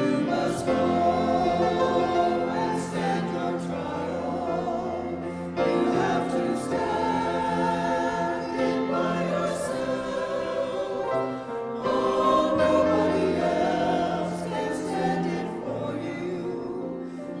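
Small mixed church choir singing in parts with grand piano accompaniment, in long sustained phrases, with new phrases starting about five and a half and twelve seconds in.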